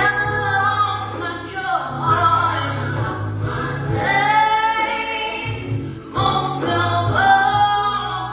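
A woman singing a gospel song, holding long notes over a steady low accompaniment.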